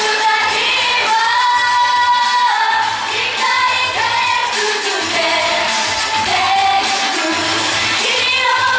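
Live performance of a J-pop idol song: several young women singing into microphones over upbeat pop backing music with a pulsing bass.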